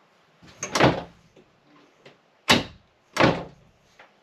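Mirrored cabinet doors in an RV bedroom knocking shut three times: once about a second in, then twice more near the end, less than a second apart.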